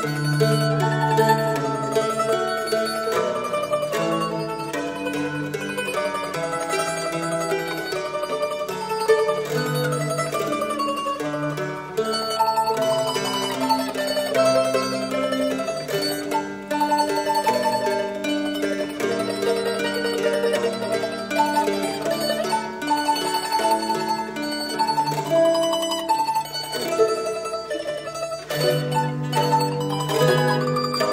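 Mandolin and tenor mandola playing a duet: a melody of held notes over a lower accompaniment, with strong low notes at the start, about ten seconds in and near the end.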